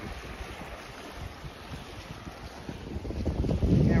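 Wind rumbling on the microphone, a low, uneven buffeting under a steady hiss.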